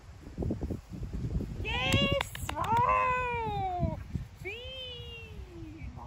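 Two long, high-pitched, drawn-out vocal calls, each rising briefly and then sliding down in pitch. The first lasts about two seconds and is the loudest sound. A few sharp clicks come just as it starts.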